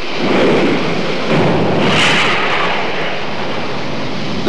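Seawater rushing and churning in a harbour as a tsunami surge comes in after an earthquake. It is a steady, loud rushing noise that swells about halfway through.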